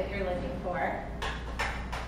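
Quiet, indistinct talk, with two short scraping sounds in the second half as a skillet is set back down on a gas stove.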